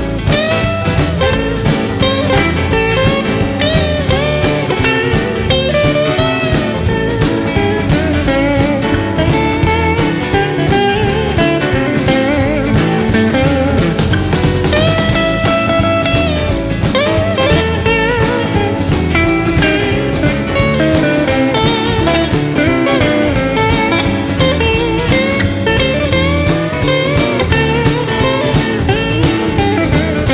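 A live blues band playing an instrumental passage: electric guitar lead lines with bent notes over a steady drum beat and bass.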